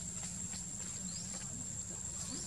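Outdoor ambience: a steady high-pitched insect drone, with a few short rising chirps and a low rumble underneath.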